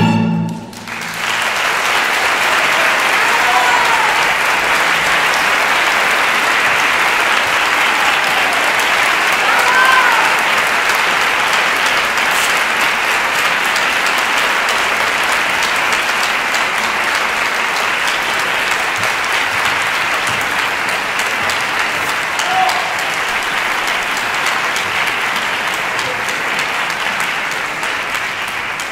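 Theatre audience applauding steadily. The applause starts about a second in, as the last sung note of the operatic duet ends, and a few brief shouts rise over the clapping.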